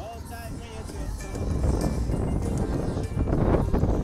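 Wind buffeting a phone microphone, a heavy uneven rumble that grows louder after the first second or so, over music and voices from the crowd.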